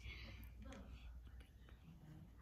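Near silence with faint whispering.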